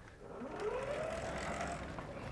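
A vertical sliding chalkboard panel being moved along its track: a faint rumbling slide with a squeal that rises in pitch from about half a second in, then levels off.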